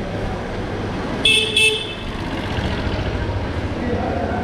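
A vehicle horn gives two short, high-pitched beeps about a second and a half in, over a steady hum of street and crowd noise.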